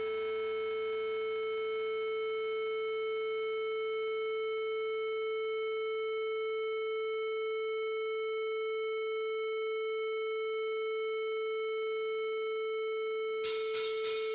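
A single steady electronic tone with overtones, held unchanged. Near the end a drum beat comes in sharply, about three hits a second.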